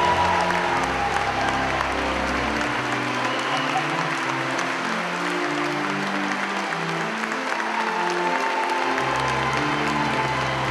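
A large congregation applauding in a reverberant church while organ music plays: held chords over a stepping bass line, the bass dropping away for several seconds in the middle.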